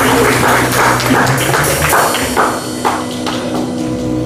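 Live band playing instrumental music on bass guitar, piano, drum kit and electric guitar. A steady percussion pattern of about four hits a second thins out and fades about halfway through, leaving sustained guitar and keyboard notes.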